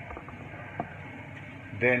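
Low, steady sizzle of minced onion, garlic and ginger frying in oil in a stainless steel pan, with a couple of faint ticks.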